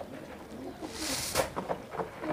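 Caged domestic pigeons cooing faintly, with a short plastic-bag rustle about a second in.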